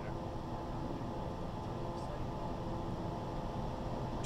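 Steady cockpit noise of a Cessna Citation Sovereign business jet on final approach: the even rush of air over the airframe and the hum of its twin turbofan engines, with a few steady tones.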